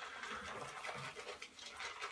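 Faint, even swishing of a Plisson shaving brush working shaving cream into a lather.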